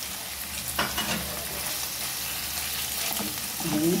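Liver pieces and sliced hot green peppers sizzling in oil in a frying pan, with a steady hiss, while a wooden spatula stirs them and knocks against the pan a few times, once sharply about a second in. The liver has just gone into the hot pan and is being seared until it only changes colour.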